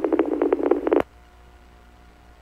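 Police radio transmission keyed open with no words: a burst of pulsing, narrow-band noise through the radio channel, ending with a click about a second in. After that only faint radio hiss remains.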